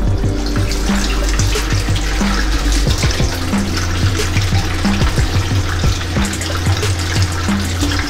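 A bathroom tap running into a sink, the stream splashing over hands being washed under it, mixed with background music carrying a heavy bass line.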